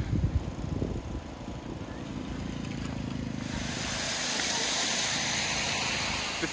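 A motor engine humming steadily, with low buffeting in the first second and a broad hiss that grows louder from a little past the middle.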